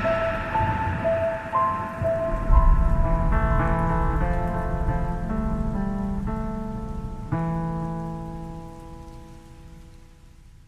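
Short logo music sting: a melody of single notes over a low rumble, with a deep hit about two and a half seconds in, then chords, and a last chord struck about seven seconds in that rings on and fades away.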